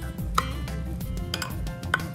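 A metal spoon clinking against a glass baking dish about three times as it scoops and spreads a runny butter-sugar mixture over the dumplings.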